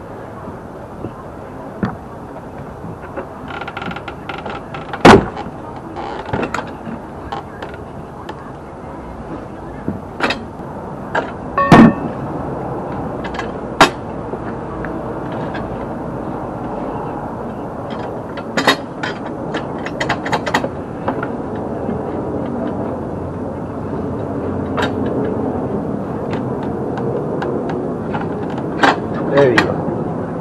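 Manual tire changer worked by hand: its steel bar clanking against the changer and a steel wheel rim as a tire is levered off, with scattered sharp metal knocks, the loudest about 5 and 12 seconds in.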